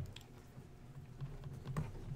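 A few scattered, irregular clicks of computer keys being pressed, over a steady low room hum.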